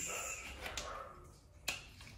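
Quiet handling noise from a removed car coilover and its parts, with a single sharp click near the end.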